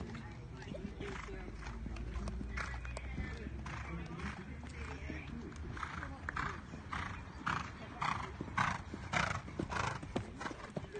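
Horse cantering on a sand arena, its strides a rhythmic beat of about two a second that grows louder in the second half as it comes nearer, over a steady low rumble.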